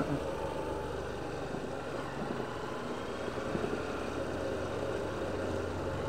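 A motor vehicle's engine running steadily at low speed: an even, low drone with no sudden events.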